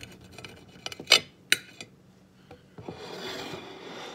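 A table knife clinking against a plate a few times, with two sharp clinks about a second in, then a steady scraping rasp near the end as the blade saws through a cheese-filled tortilla.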